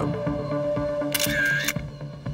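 Background music with sustained notes, and about a second in a single-lens reflex camera's shutter fires with a brief whirring click lasting about half a second.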